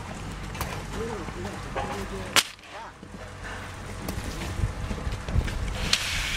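A person speaking briefly, with wind on the microphone. There is one sharp knock a little over two seconds in, and a few soft low thuds near the end.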